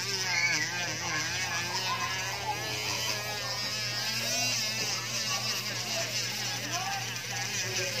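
Small rotary tool with a white buffing wheel, buzzing steadily as it polishes a carbon-fibre cover, under background music with singing.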